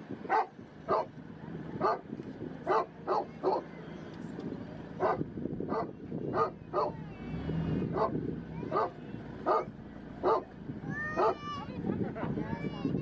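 A dog barking over and over, short sharp barks about once a second, over the steady low noise of a large flock of sheep and goats crowded in a pen.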